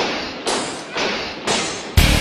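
Percussive hits from a music track, about two a second, each sharp and then fading away, with the bass dropped out. It is a break in the beat, and full heavy rock music comes in on the next hit at the end.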